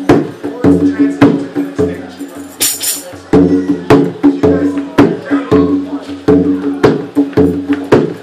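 Hand drum played with bare hands in a funk rhythm: ringing open tones alternate with sharp cracking strokes in a steady, repeating groove. A brief high hiss sounds near three seconds in.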